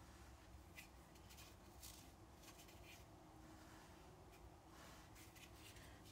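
Near silence with faint, brief scratchy strokes every second or so, typical of a large watercolour brush being worked through wet paint.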